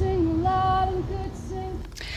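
A woman's voice singing, one note held for most of a second and then two short notes, over low street rumble.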